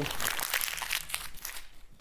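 A sheet of paper being crumpled up in the hands: a dense crackling that is loudest at first and dies away over about a second and a half.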